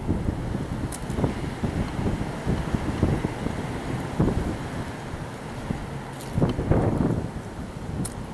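Wind buffeting the microphone in uneven gusts: a low rumble that swells and fades, strongest about three, four and six to seven seconds in.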